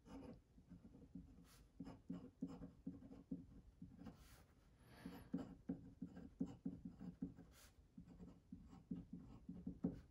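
Faint scratching of a glass dip pen nib on paper, in short irregular strokes as letters are written out.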